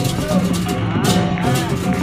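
Balinese baleganjur gamelan music: rapid, even crashes of hand cymbals over steady low drum and gong tones.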